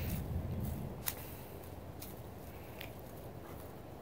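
Faint rustling of dry mulch and leaves being brushed aside by hand, with a couple of light clicks.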